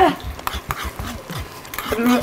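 A spoon clicking and scraping as sauce is stirred in a small bowl, over the faint hiss of a frying pan sizzling.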